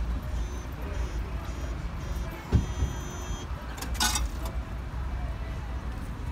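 Outdoor car-park ambience: a steady low rumble of traffic, with faint on-off electronic beeping in the first half. There is a single thump about two and a half seconds in and a short hiss about four seconds in.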